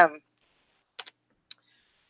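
Two short, sharp clicks about half a second apart, the first about a second in, in an otherwise quiet room.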